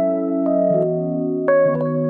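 Background keyboard music: sustained piano-like chords, with a new chord struck about one and a half seconds in.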